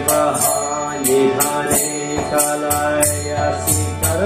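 Devotional mantra chanting sung by a voice, with small metallic hand cymbals striking a steady beat about two to three times a second.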